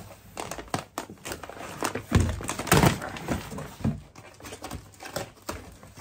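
Cardboard box being handled and a plastic mailer bag lifted out of it: crinkling plastic, rustling cardboard and a series of knocks and thunks, loudest about two to three seconds in.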